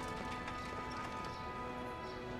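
Soundtrack music of held, sustained notes, with faint light taps underneath.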